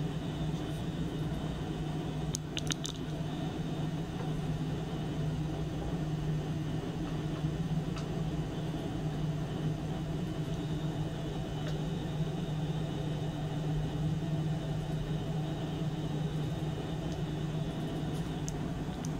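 Steady low electrical hum with a faint hiss from the running ultrasonic test setup, its probe driven by a function generator. A few faint clicks come about two and a half seconds in.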